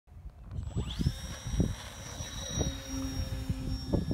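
Radio-controlled model airplane's motor and propeller spinning up with a rising whine about half a second in, then holding a steady high-pitched whine at full throttle, over low gusty rumble on the microphone.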